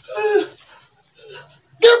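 A short voiced cry, then faint breathy sounds, then a man starts speaking near the end.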